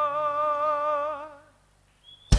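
A male singer holds one long unaccompanied note with a steady vibrato, fading out about a second and a half in, followed by a moment of silence.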